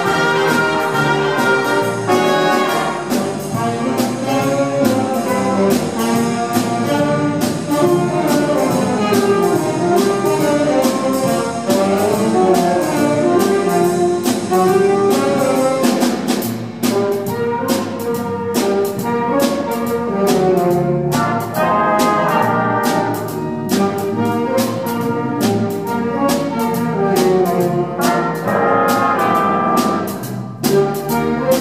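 School jazz big band playing a blues, with the trumpet section and saxophones over a steady beat from the drums.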